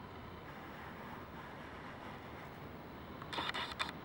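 Faint, steady outdoor wind noise on the microphone, with a short louder burst of crackling rustle about three and a half seconds in.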